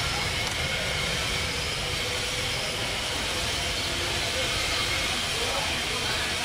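Small DC motor of a homemade toy tractor whirring steadily, with its bottle-cap wheels rolling over a wooden floor.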